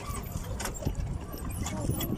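A few sharp knocks and splashes at the water's surface from a pedal boat, about a second apart, over a steady low rumble of wind and handling noise on the phone's microphone.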